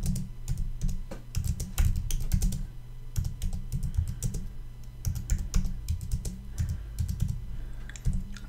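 Typing on a computer keyboard: a quick, irregular run of key clicks, with a brief pause about three seconds in.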